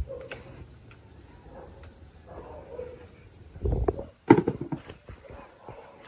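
Lanzones fruit being picked by hand in a tree: leaves and branches rustling, with scattered small clicks and a few louder knocks about four seconds in.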